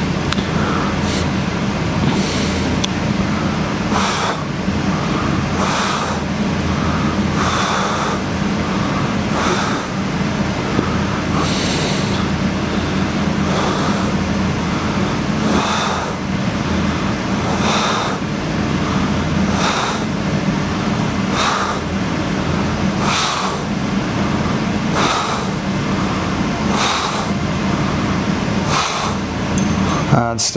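A man breathing hard into a close microphone while exercising, about one breath every two seconds, in time with slow leg repetitions, over a steady low hum.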